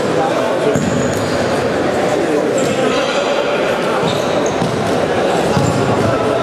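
A futsal ball being kicked and bouncing on the hard floor of a sports hall, with players' voices and short high squeaks, all echoing in the large hall.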